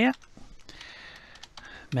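A few faint computer keyboard keystrokes as a misspelled scene name is retyped in a text field.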